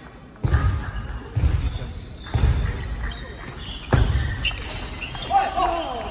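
A table tennis rally in a large hall: four heavy thuds about a second apart in the first four seconds, with lighter sharp clicks of the ball. A player's voice calls out near the end.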